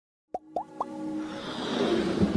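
Intro sound effects of an animated logo: three quick rising plops, a quarter-second apart, followed by a swelling riser that builds in loudness.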